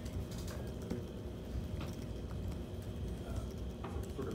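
Room background noise: a low, steady rumble with a few faint, scattered clicks.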